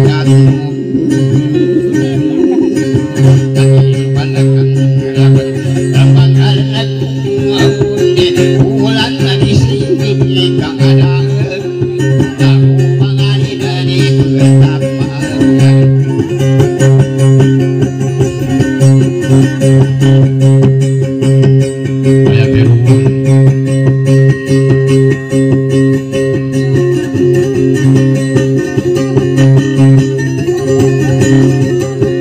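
Amplified acoustic guitar playing a busy, repetitive plucked dayunday tune over a steady low droning note.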